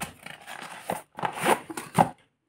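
Cardboard retail box and its packaging being handled as cables are pulled out: irregular rustling and scraping in several short bursts, the loudest near the end.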